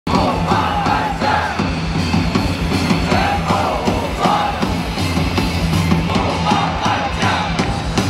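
A baseball cheer song played loud over a stadium PA, with a steady heavy beat and a crowd of fans chanting and shouting along.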